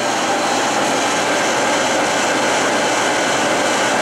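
A 48-inch Webster Bennett vertical turret lathe running under power with its turret ram power-feeding downward: a steady, even whir of the machine's motors and drives with a faint steady whine.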